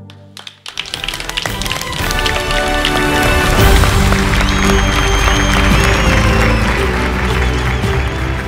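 Studio audience applauding, breaking out suddenly about a second in and going on over loud music.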